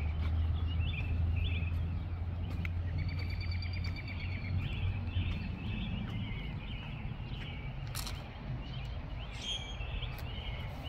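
Songbirds chirping and singing in short phrases, with a rapid trill about three seconds in. A low rumble runs underneath, strongest in the first few seconds, and there is a single sharp click near the end.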